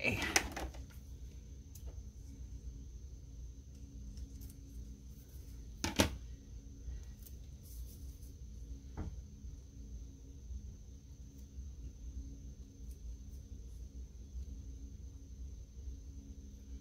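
Quiet room tone with a steady low hum and a faint high whine, as a hand presses a sticker onto planner paper. There is a single sharp click about six seconds in and a softer one about three seconds later.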